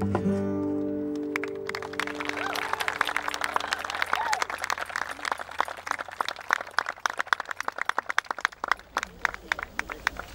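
The last strummed chord of an acoustic guitar rings out and fades over the first few seconds. From about two seconds in, a small crowd applauds, the clapping thinning out near the end.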